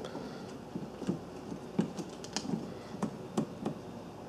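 Irregular light clicks and taps, a dozen or so, from fingers handling and pressing a Nest learning thermostat seated on its wall base.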